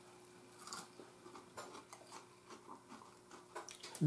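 Faint crunching and chewing of breaded, fried globemallow stems, light and crispy: a scattering of small irregular crackles, over a faint steady hum.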